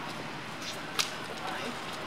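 Steady outdoor background noise with a single sharp click about a second in.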